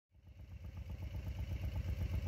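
Motorcycle engine idling with a steady low, even pulse, fading in over the first moment.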